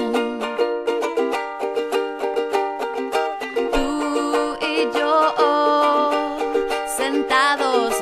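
Ukulele strummed in a steady rhythm, playing the accompaniment of a song, with a woman's voice coming in over it in places in the second half.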